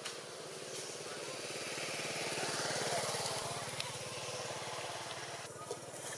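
A small engine running with a rapid low pulse. It grows louder to a peak about halfway through, then eases off.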